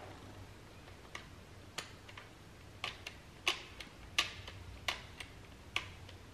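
Small plastic clicks, about ten at irregular intervals, as buttons on an LOL Surprise Under Wraps Eye Spy capsule's symbol lock are pressed, entering a combination to try to open it.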